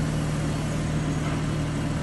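A 2015 BMW M3's twin-turbo inline-six idling with a steady low hum.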